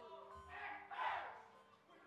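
A loud shout from a man on stage about a second in, over background music and voices.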